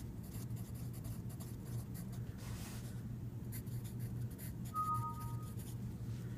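Pencil writing on lined notebook paper: a run of faint, scratchy strokes as a phrase is written out.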